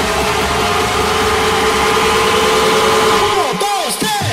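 Transition in a DJ mix: a dense, noisy bed of sound with held tones, then near the end a run of quick pitch sweeps that rise and fall one after another.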